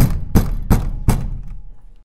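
Outro sound effect: four heavy percussive hits about a third of a second apart, followed by a low boom that fades away.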